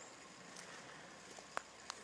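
Quiet outdoor background hiss with three faint, short clicks.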